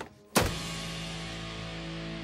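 A laptop lid slammed shut with a sharp bang about a third of a second in, followed at once by a low musical chord that holds steady.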